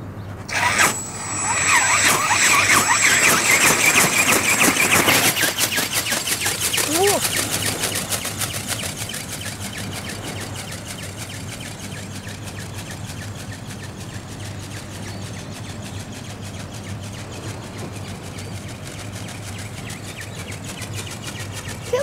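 Battery-powered gear drive of a large RC dragon ornithopter flapping its wings in flight: a rapid, even mechanical ticking with a thin high whine. It is loud in the first few seconds, fades over the next several and carries on faintly.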